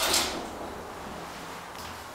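Funicular car running, with a brief swish at the start that fades within half a second into a steady low running noise.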